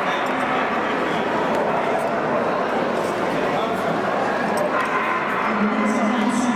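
Steady chatter of many people in a large show hall, with dogs' voices heard among it.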